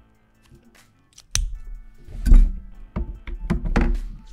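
Soft background music, then from about a second in close handling noise: a sharp click, a heavy low bump in the middle, and several more quick knocks and clicks, as markers are set down and things on the desk are moved.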